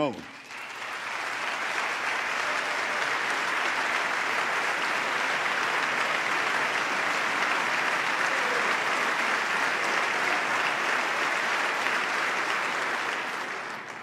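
A large audience applauding, a dense steady clapping that swells over the first second or so, holds, and dies away near the end.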